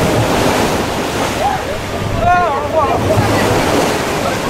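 Wind buffeting the microphone over the steady wash of the sea on a ship's deck, with a brief wavering call a little past the middle.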